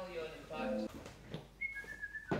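A voice trails off early on. About one and a half seconds in comes a short two-note whistle: a higher note, then a slightly lower one.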